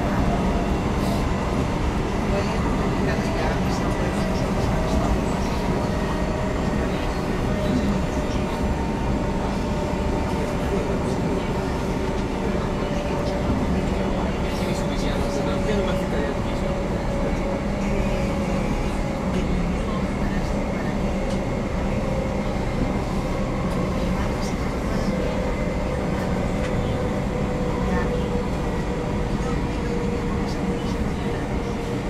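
Cabin noise inside a Cercanías commuter electric train on the move: a steady rumble of wheels and running gear on the track, with a faint whine that slowly drops in pitch as the train slows on its approach to a station.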